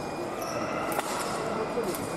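Fencing bout on a piste in a large hall: a few short sharp knocks and clicks of footwork and blades, about a second in and again near the end, over a steady murmur of voices.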